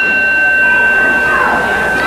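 Ring bell giving one long, steady high tone that signals the start of the match, over a murmuring crowd. A laugh comes near the end.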